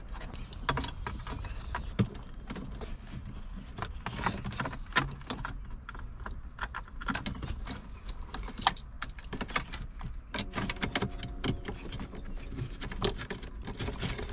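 Irregular light clicks and rattles of wiring plugs and cables being handled and pushed through a car's opened centre dash, with plastic parts knocking now and then.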